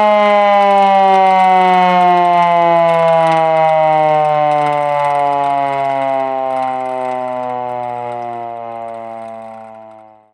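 Secomak 447 siren winding down, its wail falling slowly in pitch and fading away over the last few seconds.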